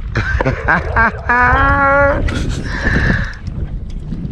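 Wind rumbling on the microphone, with a single drawn-out vocal sound from a person lasting just under a second, partway through.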